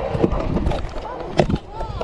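Pro scooter wheels rolling on concrete, with sharp knocks of the scooter hitting the ground about a quarter second in and again near 1.4 s as a trick is landed with a toe drag.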